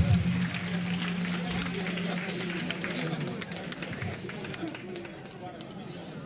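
Audience clapping, thinning out toward the end. A single low note from the amplified acoustic guitar rings for about the first three seconds.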